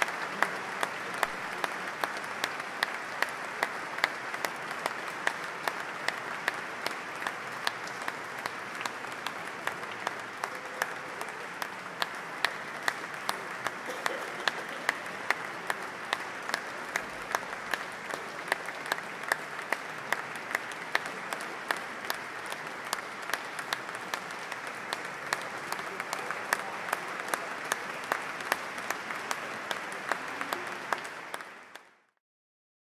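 Audience applauding steadily, with many individual sharp claps standing out from the general clapping.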